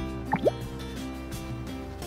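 Background music with soft sustained tones, with a short rising blip about half a second in.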